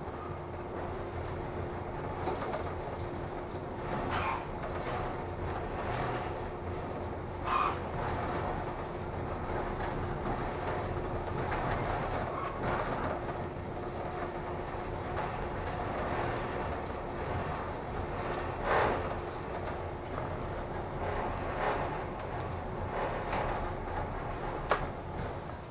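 Cabin noise inside the Kirakira Uetsu, a 485-series electric train, running on the rails: a steady rumble and hum with scattered clicks, squeaks and rattles as it slows into a station. The hum dies away about three quarters of the way through.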